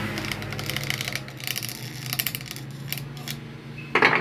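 Electric pedestal fan motor running with no blades fitted, a steady low hum with irregular light clicking on top. It runs again after repair, with its failed thermal protector wired straight through and its shaft cleaned and bushings greased.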